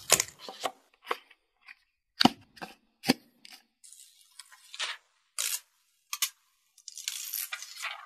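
Unboxing handling sounds: a string of sharp clicks and taps as a smartphone box is opened and the phone handled, with short crackling stretches of plastic protective film being peeled, the longest near the end.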